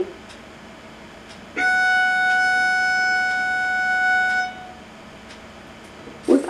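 A violin plays a single bowed F sharp, first finger on the E string, starting about a second and a half in and held steadily for about three seconds. It is heard as playback through a computer's speaker.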